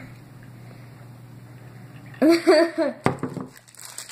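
A girl laughs briefly about two seconds in, then a few knocks follow as a water bottle is set down on a wooden table.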